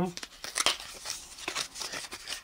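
Small paper sticker packet being torn open and crinkled by hand: a run of quick crackles and small rips as the sticker sheet is pulled out.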